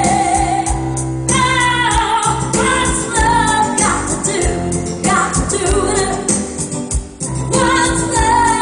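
A woman singing live over loud backing music with a bass beat.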